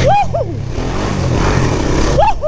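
ATV engine running steadily under heavy wind rush on the microphone, with a short shout right at the start.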